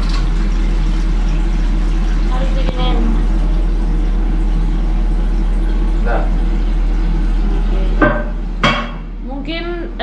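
Water running without stopping into a toilet cistern whose flush is faulty, with a steady low hum beneath it. Two sharp knocks near the end.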